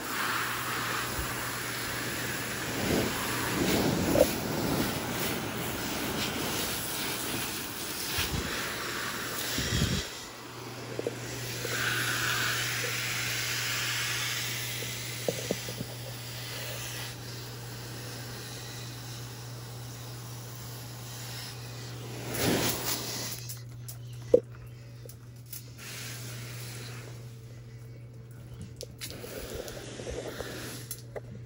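Water from a garden hose spraying hard onto an orchid's leaves and pseudobulbs, a steady hissing splash, to wash scale insects off the plant without insecticide. The spray stops well before the end, leaving a steady low hum and a couple of sharp knocks.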